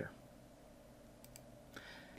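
Near silence: faint room hum with two faint, quick clicks a little past a second in, and a faint hiss near the end.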